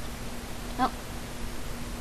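A woman's short exclamation of 'oh' about a second in, over a steady faint electrical hum and background hiss.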